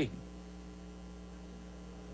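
Steady electrical mains hum with a faint background hiss.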